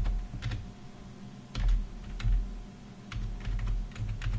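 Typing on a computer keyboard: irregular runs of keystrokes, each a short click with a low thump, in several quick bursts with short pauses between them.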